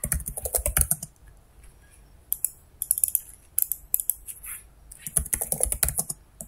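Typing on a computer keyboard: quick runs of keystrokes, a dense burst in the first second, a pause of about a second, then several more short runs.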